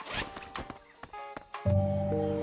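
A backpack zipper pulled in a few quick rasps, followed by several short clicks; music starts loudly near the end.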